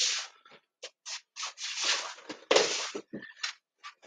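A man's exercise noises as he gets down on the floor and shifts into a side plank: about ten short, irregular bursts of breathing and body and clothing rubbing and scraping on the floor.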